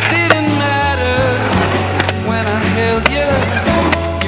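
A song with a singing voice and a steady bass line, mixed over skateboard sounds: urethane wheels rolling on concrete and sharp clacks of the board. The loudest clack comes a little after the start, and another about three seconds in.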